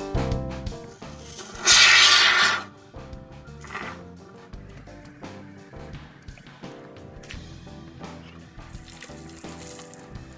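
Short loud hiss of an aerosol can of Great Stuff Gaps & Cracks expanding foam spraying, about two seconds in and lasting under a second, with a fainter hiss near the end. Background instrumental music plays throughout.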